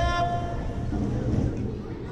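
A single electronic horn-like start tone, under a second long, sounds over the echoing hubbub of an indoor pool, followed by crowd voices.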